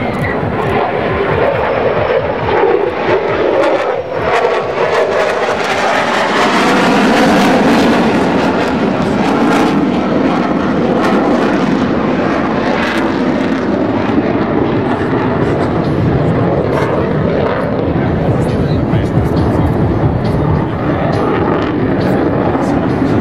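Jet noise from an RSAF Black Knights F-16 fighter flying an aerobatic display, a continuous rushing roar that swells to its loudest about seven seconds in.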